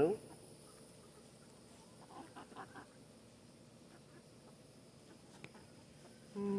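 Chickens clucking: a few short, soft clucks about two seconds in, over a steady high buzz of insects.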